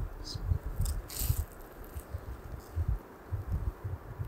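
Butter-toasted bread roll crackling as it is broken apart and bitten, a few crisp crackles in the first second or so, then chewing with soft, repeated low thumps.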